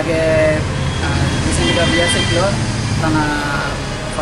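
A man talking, with a steady low rumble of road traffic behind him.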